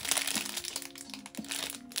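Clear plastic food wrapper crinkling and crackling as it is handled, over background music with a plain held-note melody.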